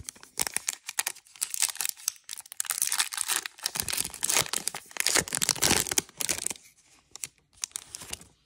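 Foil wrapper of a Prizm football trading card pack being torn open and crinkled in the hands: a dense crackling for the first six seconds or so, then only a few sharp crinkles.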